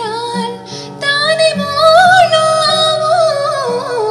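A woman singing a Malayalam song to her own acoustic guitar strumming; her voice swells about a second in into a long held note that falls away near the end.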